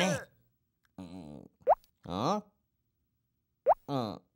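Short bursts of cartoon gibberish vocalising, with two quick rising pop sound effects, one near the middle and one near the end, each followed by a vocal sound that falls in pitch.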